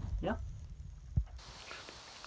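A single spoken "yeah" near the start, then quiet room noise with one brief, soft, low knock about a second in.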